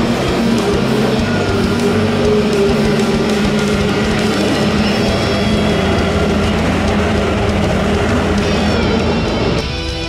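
Electric-guitar rock music with the running of kyotei racing boats' outboard motors beneath it; the sound drops in level shortly before the end.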